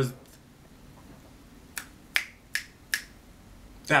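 Four quick finger snaps, evenly spaced about 0.4 s apart, starting a little under two seconds in, made as emphasis between spoken words.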